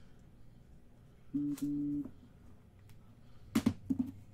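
Two short electronic beeps, one right after the other, about a second and a half in. Near the end come a few sharp clacks of hard plastic card holders being set down on a stack.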